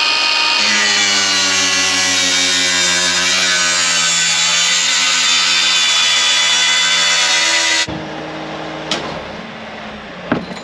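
Cordless power tool running at high speed as it cuts into the old feed-wagon conveyor belt's joint, its pitch sagging a little under load. It switches off sharply about eight seconds in and a fainter hum follows as it winds down, with a single click near the end.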